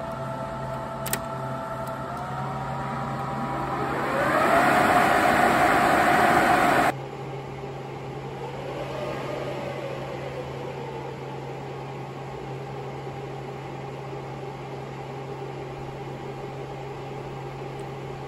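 Cooling fans of an HP ProLiant DL580 G4 server whirring with a steady hum, spinning up during power-on self-test. Two short clicks near the start, then the fan tones rise about 2 seconds in and swell to a loud rush; about 7 seconds in it drops suddenly to a quieter steady whir, with a brief rise and fall in pitch around 9 seconds.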